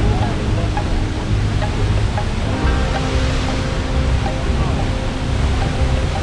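Waterfall pouring into a plunge pool: a loud, steady rush of falling water. Soft background music with long held notes sits under it, clearer in the second half.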